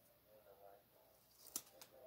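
Near silence with faint handling of small paper stickers between fingers, and a few small sharp clicks about one and a half seconds in.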